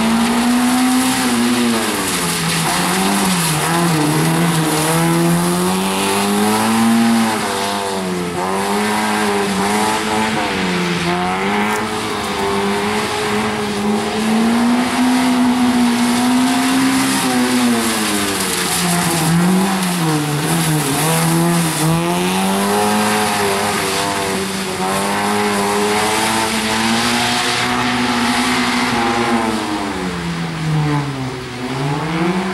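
Honda Civic rally car's four-cylinder engine driven hard at high revs, its pitch dropping and climbing again every few seconds as the car lifts off and accelerates around a wet tarmac course.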